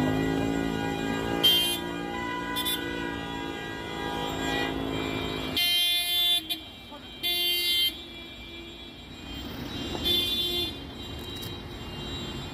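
Several car horns honking at a road blockade, blown by held-up motorists. Long, overlapping held blasts run through the first few seconds, then separate honks come about six, seven and a half and ten seconds in.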